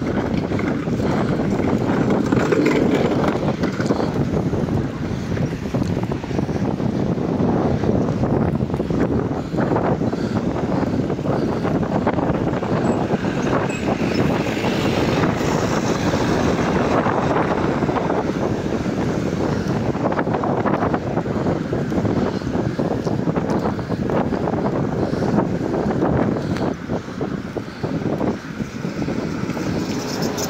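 Wind buffeting the camera's microphone as it moves along, a steady loud rushing noise.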